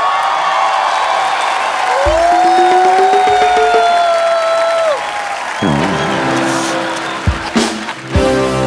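Music from the show's live band over audience applause: long gliding, sustained notes at first, changing to steady chords a little past halfway.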